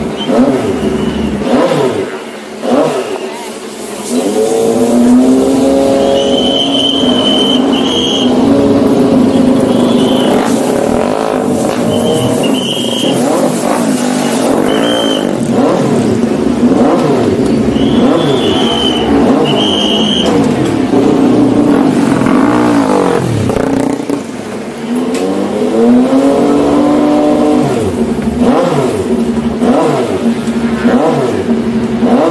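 Moto3 race bikes' 250 cc single-cylinder four-stroke engines being warmed up, revved over and over so the pitch keeps rising and falling, with a lull about two seconds in and another near the end.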